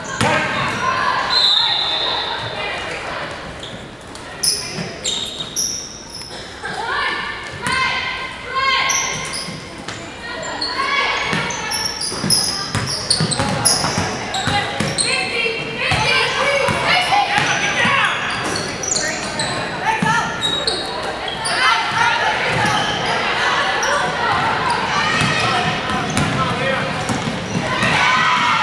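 A basketball being dribbled and bounced on a hardwood gym floor during live play, amid indistinct voices of players and spectators, echoing in a large gymnasium.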